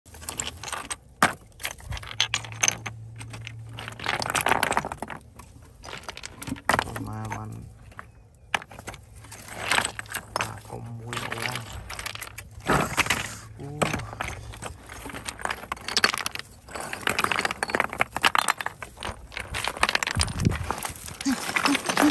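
Loose stones clinking and clattering against each other as hands shift and lift them, in many short, irregular knocks.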